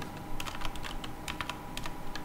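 Computer keyboard typing: a quick, uneven run of keystrokes, several clicks a second.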